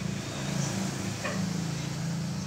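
A steady low drone of a running motor or engine, with a faint click just past the middle.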